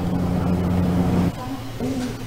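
Steady low hum that cuts off abruptly just over a second in, leaving quieter background noise.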